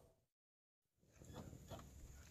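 Near silence: the wavering whine of an electric RC crawler's motor and gears fades out at once, then a moment of dead silence at a cut, after which faint rustling and a few soft ticks come back.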